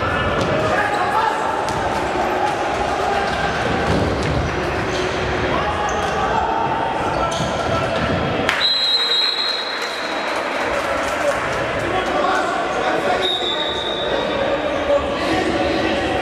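Futsal game sound in a large echoing sports hall: ball kicks and bounces on the wooden floor, players' voices calling out, and two short high whistle blasts, the first about halfway through and the second a few seconds later.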